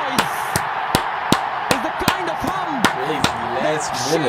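A person clapping hands steadily, about nine claps in four seconds at an even pace, loud and close to the microphone. Underneath are the match highlights' stadium crowd and voice.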